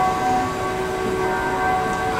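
A steady hum made of several held tones at once, unchanging throughout, with a brief spoken 'um' at the very start.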